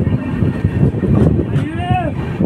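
Archana Express passenger coach rolling along a station platform on arrival, a steady rumble of wheels on rail. A voice calls out near the end.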